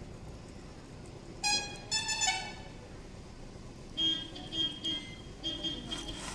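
A horn toots twice, about a second and a half in. From about four seconds in comes a run of short, high-pitched beeps, roughly three a second.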